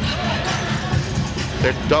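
A basketball being dribbled on a hardwood court, repeated low thuds, over steady arena crowd noise.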